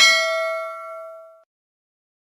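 A notification-bell chime sound effect from a subscribe-button animation: one bright, bell-like ding with several ringing tones that fades away by about a second and a half in.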